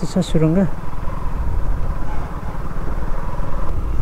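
Motorcycle running at low riding speed, a steady low rumble of engine and wind on the microphone, after a few spoken words that end about half a second in.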